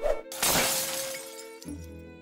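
A short hit, then a loud shattering crash, like glass breaking, that dies away over about a second, laid over soft music with sustained string notes.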